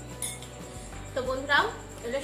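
A metal spoon clinks once against a small glass bowl of tamarind water about a quarter second in. About a second in, a short burst of voice follows and is the loudest sound.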